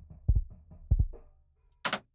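Bass drum picked up by a subwoofer speaker wired as a microphone (a sub kick), played back raw with no gate, compression or EQ: two deep, low thumps about two-thirds of a second apart, with faint snare bleed. A single sharp click comes near the end.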